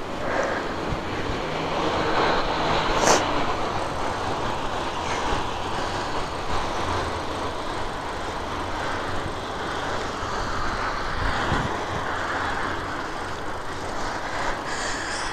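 Steady rushing noise of a bicycle on the move: wind over the microphone and tyres rolling on the road. There is one sharp click about three seconds in.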